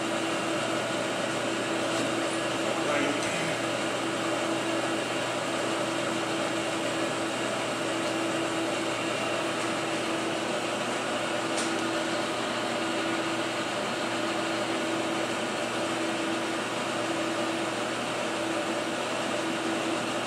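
Steady motor hum in a machine shop, with a constant mid-pitched tone, and a faint click about eleven seconds in.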